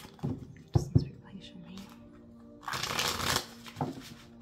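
A deck of tarot cards shuffled by hand: a few soft taps in the first second, then a riffling burst lasting under a second near the three-second mark. Faint background music runs underneath.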